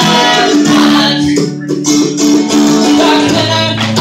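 A live acoustic string band, mandolin and acoustic guitars, playing a song, briefly quieter about halfway through.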